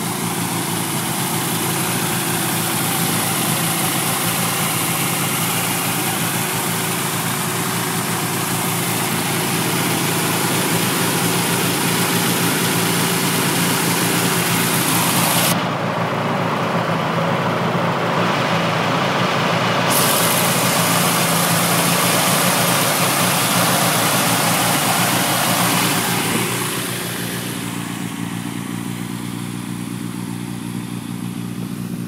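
Classic Mini's A-series four-cylinder engine idling steadily with the bonnet open. The sound dulls for a few seconds about halfway, then grows quieter over the last few seconds.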